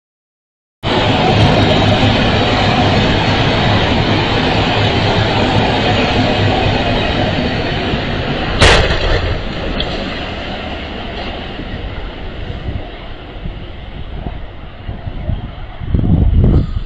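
A passenger train running over a low brick rail bridge, a loud steady rumble that slowly fades. About eight and a half seconds in, a single sharp crash: a box truck's body striking the underside of the bridge, which is too low for it.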